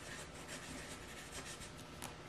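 Black Sharpie felt-tip marker scratching faintly on paper in short, quick back-and-forth strokes, coloring in a small filled area.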